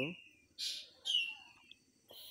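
A bird chirping: a few short high calls, including a falling whistled note.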